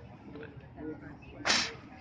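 A man spitting once, a short hard burst of air through the lips about one and a half seconds in, with faint voices before it.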